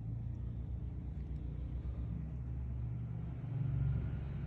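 A low, steady rumble of a running motor, its pitch shifting slightly partway through.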